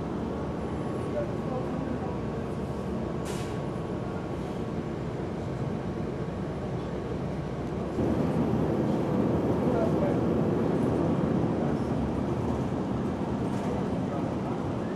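Steady engine and road noise heard from inside a moving city bus, getting louder about eight seconds in.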